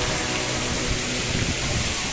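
Water running and splashing through a water-park play structure and its slides, a steady rushing hiss.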